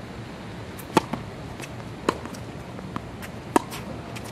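Tennis rally on a hard court: sharp pops of the ball striking racket strings and bouncing on the court, three loud ones roughly a second or more apart, with fainter ticks between them.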